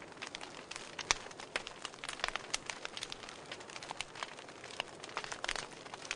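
Faint irregular crackling: sharp clicks, several a second and uneven in strength, over a low steady hiss.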